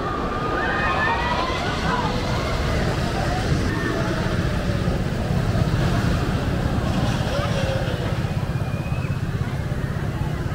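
Amusement park ambience: people's voices in the distance over a steady low rumble that swells a little about halfway through.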